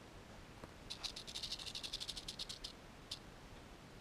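Rattlesnake shaking its tail rattle: a rapid buzz of clicks starting about a second in and lasting under two seconds, then one lone click. It is the snake's defensive warning at the close approach.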